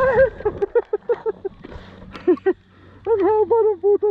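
A person's voice talking in short, quick bursts; no machine or trail sound stands out.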